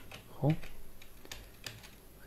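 Computer keyboard keys being typed, with two sharp key clicks about a second and a half in, in the rhythm of the Enter key being pressed twice to close a definition in the Python shell.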